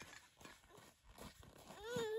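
Faint scattered taps and knocks, then near the end a young child's voice starts with a single held, even-pitched cry.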